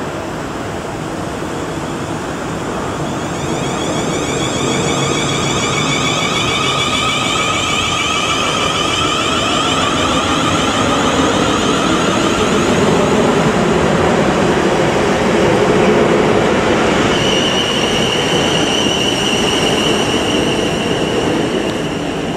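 South Western Railway Class 450 Desiro electric multiple unit running through the station: rumble of wheels on rail under a high traction-motor whine that shifts in pitch, settling into a steady high whine in the last few seconds.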